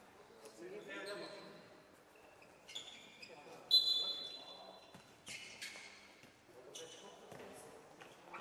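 Futsal referee's whistle, one short blast a little before halfway, the loudest sound. Around it are players' shouts and the ball being kicked and bouncing on the hard court, echoing in a large sports hall.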